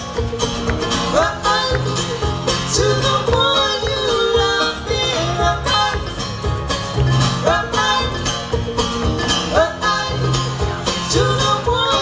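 Live acoustic bluegrass band playing: banjo, acoustic guitar and upright double bass, with a hand shaker keeping time and a voice singing over them.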